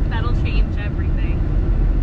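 Mercury Marauder V8 running steadily while driving, a constant low rumble of engine and road noise heard inside the cabin.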